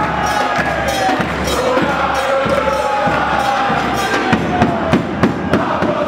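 Live music: a sung melody over a steady beat of about two strokes a second, with a crowd singing along and cheering.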